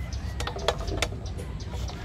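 A few light, sharp taps and clicks about half a second to a second in, over a steady low rumble.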